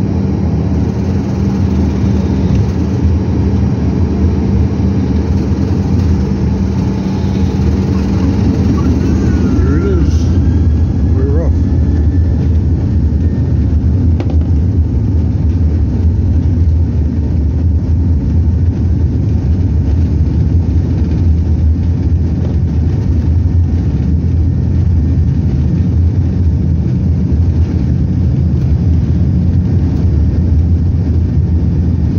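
Airliner cabin noise during the takeoff roll: jet engines at takeoff power and the wheels rumbling on the runway, heard from inside the cabin. A steady hum in the first ten seconds gives way to a deeper rumble as the plane gathers speed.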